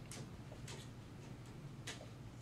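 Three faint, sharp clicks, one near the start, one about two-thirds of a second in and one near the end, over a steady low hum.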